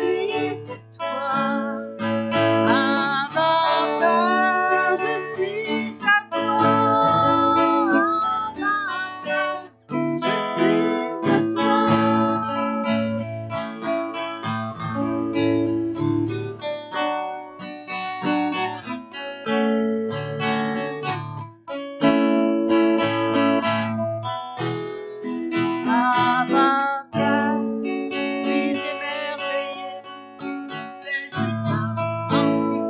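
Acoustic guitar strummed in a slow worship song, with a woman singing over it in stretches.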